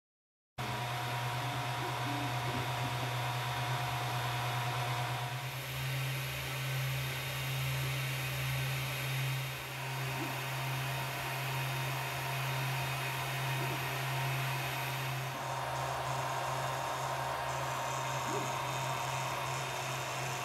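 Ender 3 Pro 3D printer running a print on its SKR2 board with TMC2209 stepper drivers: a steady whir of cooling fans with faint stepper-motor tones that shift as the moves change, about 5 and 15 seconds in. It starts suddenly about half a second in.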